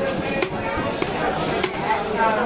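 Large knife chopping katla fish into chunks on a wooden log chopping block: a few sharp chops, with market chatter behind.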